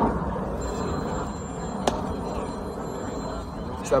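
Steady outdoor ballfield background noise with faint thin high-pitched tones, and a single sharp click about two seconds in.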